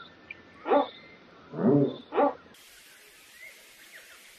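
A heron giving three loud calls, each sliding down in pitch, the middle one longer and deeper than the other two. They are followed by a quieter stretch with a faint short call.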